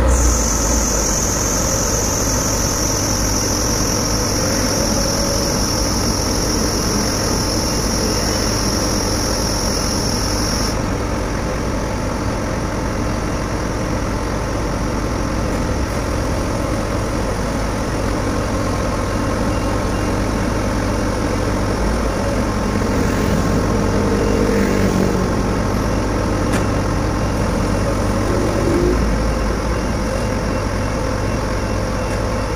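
Liebherr LTM 1800 mobile crane's diesel engine running steadily at a low idle. A high steady whine stops suddenly about ten seconds in.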